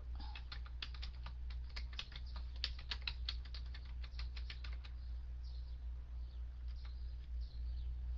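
Typing on a computer keyboard: a quick run of keystrokes for about five seconds, then a few scattered key clicks, while the typist looks something up. A steady low hum runs underneath.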